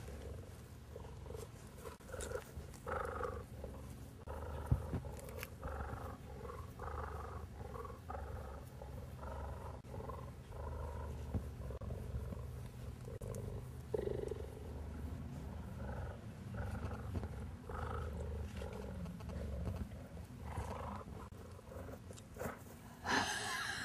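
An adult cheetah purring steadily and deeply, swelling and easing with each breath, as it is scratched through a chain-link fence. The purr is a sign of a contented cat.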